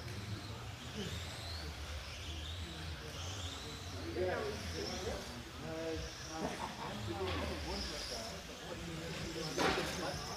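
Radio-controlled on-road cars' electric motors whining at high pitch, rising and falling as the cars speed up and slow around the track, with a sharp knock near the end.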